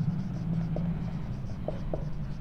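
Marker pen writing on a whiteboard, scratching in short repeated strokes as a word is written, over a steady low hum.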